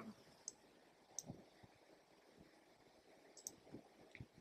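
Near silence: room tone with a handful of faint, short clicks scattered through it.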